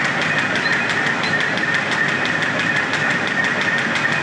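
Paper bag making machine running steadily: a continuous mechanical whir with a steady high whine and a fast, even ticking of its repeating cycle.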